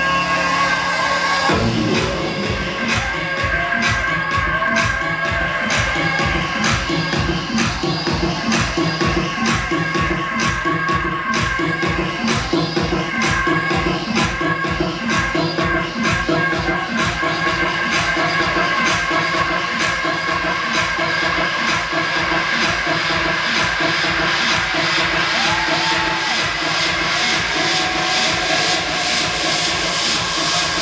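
Electronic dance music from a DJ set played loud over a club sound system. A steady kick-drum beat and bass come in about a second and a half in, under sustained synth tones.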